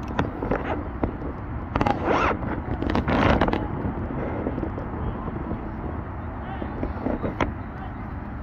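Voices shouting across an outdoor soccer field, with two loud calls about two and three seconds in and a shorter one near the end, over steady low outdoor background noise.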